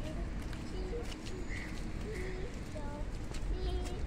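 Footsteps on brick paving, a string of light irregular steps, with several short faint voice sounds over a steady low rumble on the microphone.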